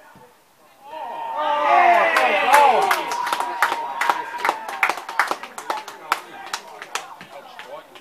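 Small crowd of football spectators cheering and shouting at a goal, starting about a second in, followed by scattered hand-clapping for several seconds.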